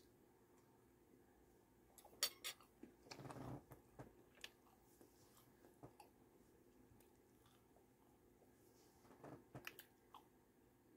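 A person eating a breaded chicken nugget: faint chewing and mouth clicks, mostly very quiet, with a brief crunchy patch about three seconds in and a few more clicks near the end.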